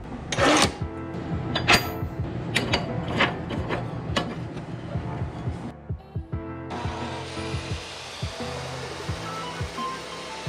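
Background music over irregular metal clanks and knocks as a steel shaft is set and clamped in the vise of a DeWalt abrasive chop saw. From about seven seconds in, an even whir comes up as the chop saw motor spins up for the cut.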